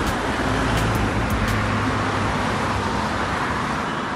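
Steady road traffic noise from vehicles running on a multi-lane road, with a low hum underneath.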